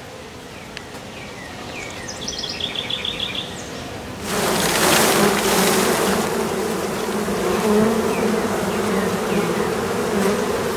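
A frame of honey bees shaken into a hive box about four seconds in: a sudden rush of noise, then the loud, steady buzz of a mass of disturbed bees, a low hum that wavers in pitch.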